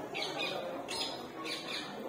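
Birds calling in short, shrill squawks, four or five in two seconds, over a murmur of voices.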